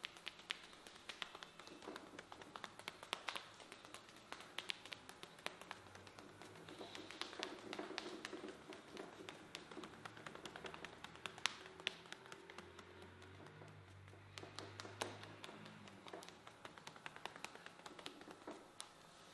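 Light, quick taps and slaps of hands on a man's head and neck during a percussive massage, coming in irregular runs of sharp pats.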